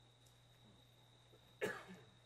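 A single short cough from a person, about one and a half seconds in, over a faint steady hum in a quiet hall.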